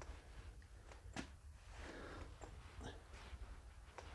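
Faint footsteps and handling of a handheld camera: a low rumble with a few light clicks and knocks, the sharpest about a second in.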